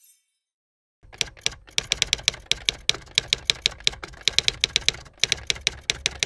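Typewriter keystrokes, used as a sound effect: a rapid run of sharp key clacks, about five a second, starting about a second in, with a short break near the end.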